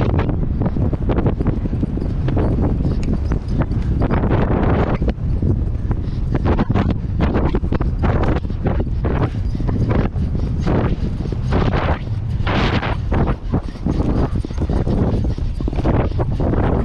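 A pony galloping on turf, its hoofbeats thudding under heavy wind buffeting the rider-mounted camera's microphone.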